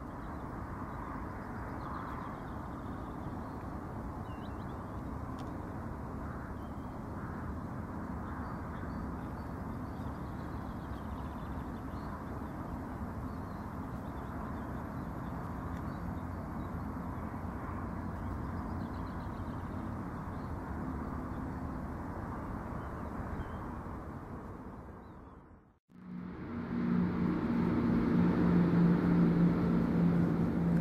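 Steady low outdoor background noise, like a distant rumble, with a few faint high chirps now and then. Near the end it cuts out briefly and gives way to a louder background with a steady low hum.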